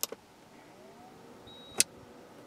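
Eaton Powerware PW5115 UPS being switched on at its front-panel button: a click at the press, then near the end a short high beep followed by a sharp click.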